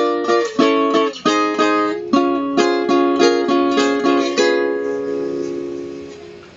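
Nylon-string requinto played solo: a melodic phrase of plucked notes, often two at a time, for about four seconds, then a final chord left to ring and fade.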